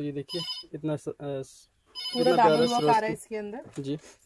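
A person talking, with a steady high electronic tone sounding twice: briefly near the start, then for about a second from two seconds in.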